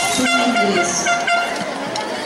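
Handheld noisemaker horns blown by a crowd, several steady overlapping toots starting and stopping, with voices calling among them.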